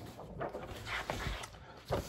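Faint rustling and brushing of printed paper sheets and a card placard being swapped by hand.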